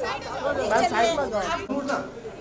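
Several voices talking and calling over one another in a jostling crowd, with no single speaker standing out.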